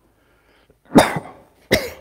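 A man coughing twice, two short coughs under a second apart.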